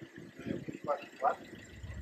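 Snatches of people talking nearby over low city-street background noise.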